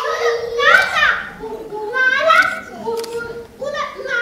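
A high, squeaky voice making a string of short cries that rise and fall in pitch, about half a dozen in a row: a stage performer imitating a newly hatched seagull chick.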